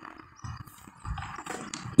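Faint outdoor background noise in a pause between loud amplified speech, with a few soft clicks and knocks in the second half.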